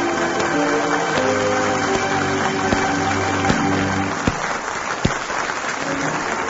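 Orchestral music closing the radio play, with applause running underneath it and a few sharp clicks in the middle.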